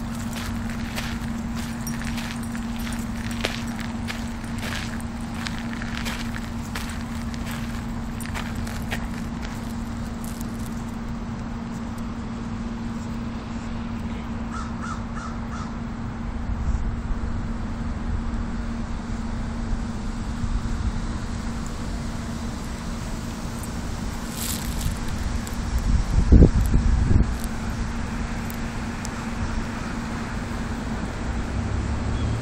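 Footsteps crunching on a gravel path as a person walks two small dogs, in a run of short strokes over the first ten seconds or so, over a steady low hum. A loud low rumble comes near the end.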